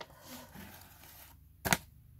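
A folded paper poster being unfolded by hand, rustling faintly, then one sharp, short snap of the paper about three-quarters of the way through.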